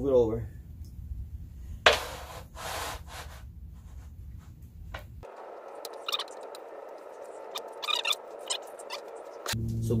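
Two short bursts of noise a couple of seconds in as a sealer-soaked marble mosaic tile sheet is handled and drips over a plastic tub. Then quieter background music with a few light clicks.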